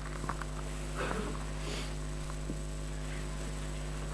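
Steady electrical mains hum from the microphone and sound system, with a few faint small clicks and a soft hiss about a second and a half in.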